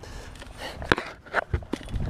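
A few sharp knocks and clicks over a low rumble: people shifting their feet and gear on the boat deck while a fish is brought to the boat.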